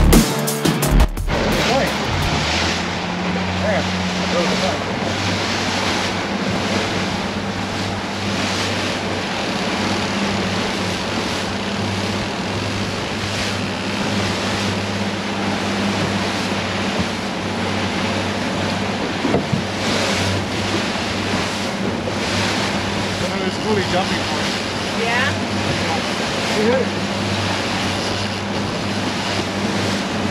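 Outboard motor running steadily under way, a constant low hum over the rush of wind and the boat's wake. Music cuts off about a second in.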